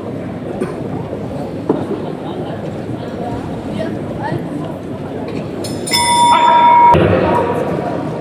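Loud arena crowd noise with shouting during a boxing round. About six seconds in, the end-of-round bell rings out clearly for about a second, ending the round.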